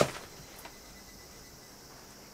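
Quiet room tone with a steady hiss, and one faint tick just over half a second in.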